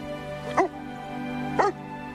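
A dog barks twice, two short barks about a second apart, over soft background film music.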